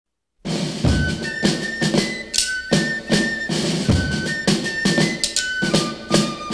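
Instrumental opening of a rock band recording, starting about half a second in: a drum kit beat under a high held melody line.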